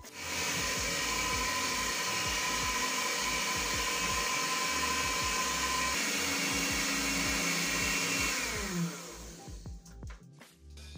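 Electric hand mixer on its stand base, beaters whipping frosting in a stainless steel bowl; the motor runs steadily. Near the end it is switched off, and its whine falls away as the motor spins down.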